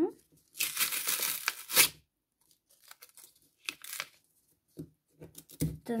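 Paper tearing as a firmly stuck-down paper flap is pulled open: one loud tear lasting just over a second, starting about half a second in, then small rustles and crinkles of paper.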